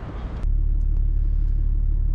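Brief outdoor noise, then a low, steady rumble inside a car's cabin that cuts in suddenly about half a second in.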